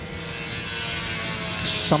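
Engines of several classic Mini race cars droning down the straight, growing gradually louder as they approach.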